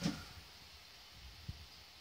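Near silence: faint room tone, with one small click about one and a half seconds in.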